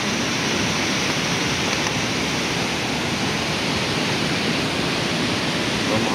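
A waterfall: the steady, even rush of falling water, unbroken throughout.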